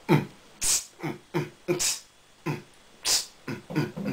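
Mouth beatboxing: a beat of short, low vocal kick sounds with a hissing snare sound about every second and a bit.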